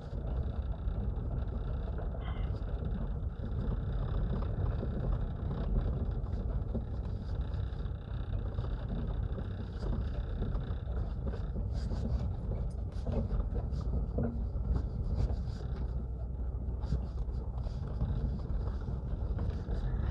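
Car driving slowly on a dirt road, heard from inside the cabin: a steady low rumble of engine and tyres.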